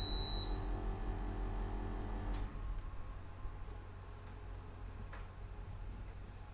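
A short, high-pitched electronic beep at the very start, followed by a faint steady low hum with a couple of faint clicks.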